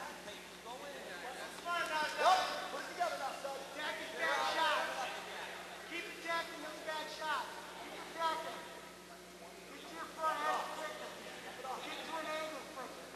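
Voices calling out in a large gym hall: a run of short shouts with brief pauses between them, well below the level of the commentary.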